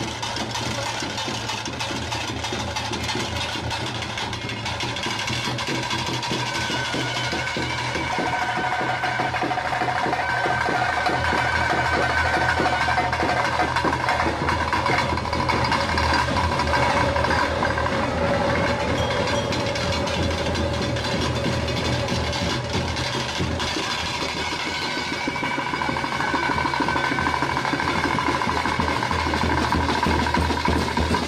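Traditional ritual music: a reed wind instrument playing long held, slowly shifting notes over dense, steady drumming, with a continuous low drone underneath.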